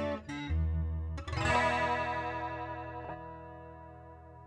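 Taylor 214ce acoustic-electric guitar played through a Boss CE-2W Waza Craft chorus pedal: a few picked notes, then a chord strummed about a second and a half in and left to ring out and fade, its tone wavering with the chorus.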